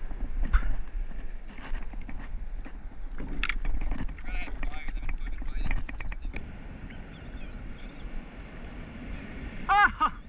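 Wind rumbling on the microphone over a fishing paddleboard, with scattered knocks and clicks of rods and reels being handled on the deck; one sharp knock about half a second in. A man's short shout just before the end.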